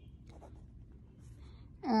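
A quiet pause with a few faint, soft clicks or scratches, then a woman's drawn-out hesitation sound 'aah' near the end.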